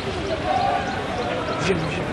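Indistinct voices of people talking around the camera over a steady background noise, with a short sharp knock near the end.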